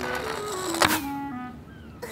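Cartoon background music with notes stepping down in pitch, broken by a single sharp click a little under a second in: a sound effect of the shuffleboard cue knocking the puck.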